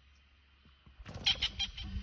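A spurfowl flushing about a second in: a sudden burst of about six harsh, rapid notes in under a second, the alarm cackle of a bird put up by a pouncing leopard cub.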